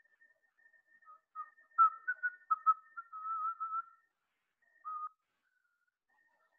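A man whistling softly to himself: a few short notes, a longer wavering note, and one more short note near the end.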